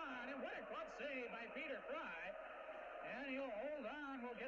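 Speech only: a man's voice giving play-by-play commentary without a pause.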